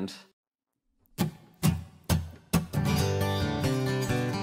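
Guitar: after a moment of silence, four single strummed chords about half a second apart, then steady strumming begins near the end as the song starts.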